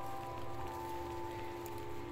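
Background music of long, steady held tones, over a soft crackling rustle of footsteps in dry leaf litter.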